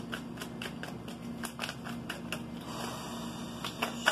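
A tarot deck being hand-shuffled: a quick, uneven run of soft card slaps and flicks, with a brief rustle of cards sliding together about three seconds in.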